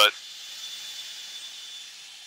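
Steady hiss on a fighter jet's cockpit intercom between words, with a faint high steady tone running through it.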